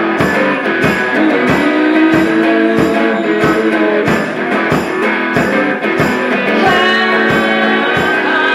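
Live guitars playing an instrumental passage between verses, strummed and picked over a steady beat about twice a second.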